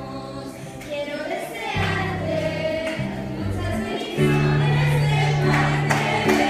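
Church worship music: voices singing together over a band, with a bass line that changes note every second or so. It gets louder about four seconds in.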